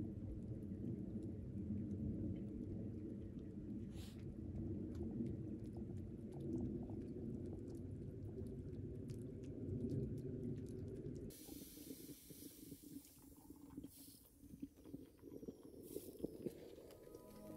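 Low, unsteady rumble of wind buffeting the microphone outdoors, with faint scattered ticks of drizzle. About eleven seconds in it stops abruptly and a quieter, higher hiss takes over.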